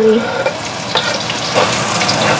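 Chopped chili sizzling in hot oil and garlic in a wok as it is scraped in from a cutting board and stirred with a wooden spatula, with a few sharp clicks of knife and spatula against board and pan.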